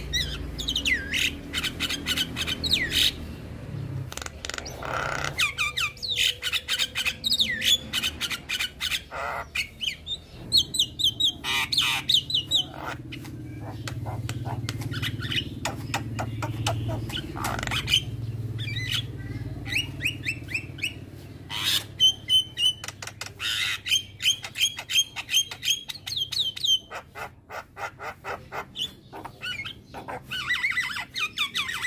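Young Javan myna singing: a long, varied run of harsh squawks, fast clicking chatter and rapid repeated whistled notes, broken by short pauses.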